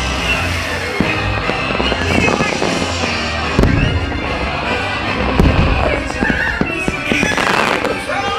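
Aerial fireworks going off in quick succession, many bangs throughout, over loud soundtrack music.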